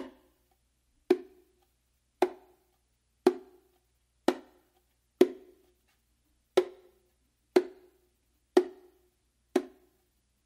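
Slow, single slaps on the macho of a pair of bongos, struck about once a second with the palm anchored on the head and rim. Each is a short, dry crack that dies away quickly: a slap-building workout that gives deliberately little projection.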